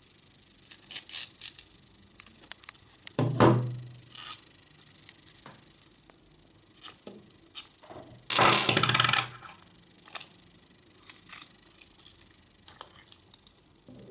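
Handling noise as a 3D-printed plastic extruder body, large printed gear and steel hobbed bolt are taken apart by hand so a metal washer can be removed: scattered light clicks of plastic and metal parts. There is a louder knock about three seconds in and a longer rustling scrape lasting about a second around eight seconds in.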